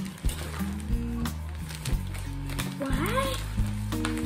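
Background music with a steady bass line, over light crackling of a plastic packaging bag being handled. A short rising-and-falling voice-like sound comes about three seconds in.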